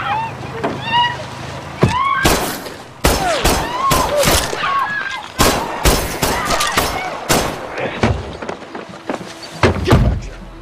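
Pistol shots fired in a long, irregular run, several a second, from about two seconds in until about two and a half seconds before the end, with one more shot near the end. Short cries from a voice come between the shots.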